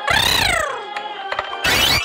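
Play sound effects for toy cars: a pitched glide falling over about half a second, a few light clicks, then a short rough burst near the end as a toy car is pushed into another.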